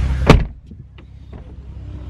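Bentley Continental GT door swung shut, closing with one solid thump about a third of a second in, followed by a few faint mechanical clicks.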